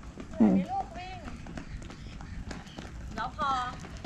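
Surf skate's wheels rolling over a rough concrete street: a steady low rumble with small irregular knocks, under a few short spoken words.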